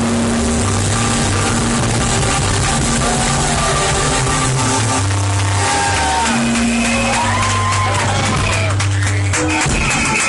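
A live roots reggae band playing through a club sound system: a deep bass line in long held notes under keyboards, with a man's voice rising and falling over it in the middle of the stretch.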